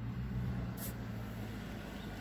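A steady low mechanical hum, with a brief soft hiss a little under a second in.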